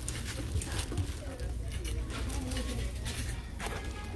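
Handbags and their metal hardware being handled on a rack: light rustling and irregular small clicks over a steady low hum, with faint voices in the background.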